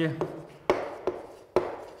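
Chalk writing on a blackboard, with two sharp taps of the chalk against the board a little under a second apart.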